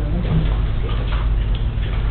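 Room tone in a council chamber: a steady low hum through the sound system, with only a faint murmur and no clear event.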